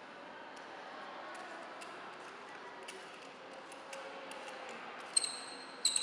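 Small clicks and taps of a microscope eyepiece's metal parts being handled and screwed back together. Near the end come two sharp metallic clinks, each ringing briefly.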